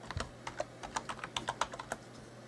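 Computer keyboard being typed on: a quick, uneven run of about fifteen key presses as a login password is entered.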